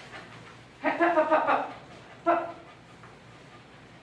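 Border collie mix dog vocalizing in protest at being brushed. First comes a drawn-out pitched sound of under a second, about a second in, then a short second one just after two seconds.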